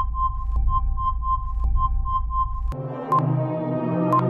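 Electronic quiz-show timer music: a low drone with a quick repeated beep, about four a second. A little under three seconds in, the drone and beeps stop and a new ambient synth bed starts with a single ping.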